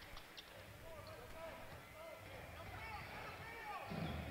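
Faint basketball-arena sound: scattered distant voices from the crowd and court over a low murmur, with a few faint ticks.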